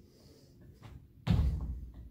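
One heavy thud of feet landing a straight jump on a thin exercise mat over a wooden floor, about a second in, dying away with a short echo in the hall.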